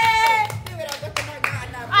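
A few people clapping their hands excitedly, a long excited shout from the group dying away about half a second in, followed by scattered, uneven claps.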